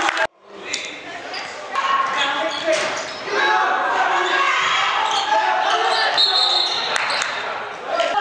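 Basketball game in an echoing gym: a basketball bouncing on the hardwood court a couple of times under a steady din of players' and spectators' shouts and chatter. The sound cuts out briefly right at the start.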